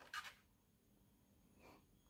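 Near silence: room tone, with one brief faint rustle just after the start.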